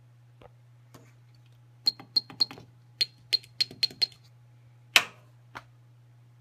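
Sharp button clicks: a quick run of about eight over two seconds, each with a short high ring. One louder click follows about five seconds in, then a faint one.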